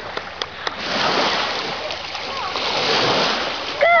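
Water splashing as a puppy swims into the shallows and wades out onto the shore, the splashing building up over a couple of seconds and peaking about three seconds in.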